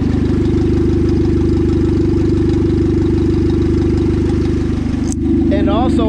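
Turbocharged Honda Civic D16 four-cylinder idling steadily while it is run to burp air out of the cooling system through a funnel on the radiator neck. The sound breaks briefly about five seconds in, then the idle carries on.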